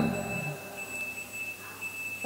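A pause in speech: a man's last word dies away in the room's echo, leaving faint room noise with a thin, steady high-pitched tone running under it.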